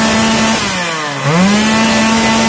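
Modified Stihl 076 two-stroke chainsaw on its stock muffler, free-revving at high speed: held at full revs, it drops off for about half a second partway through and then revs straight back up.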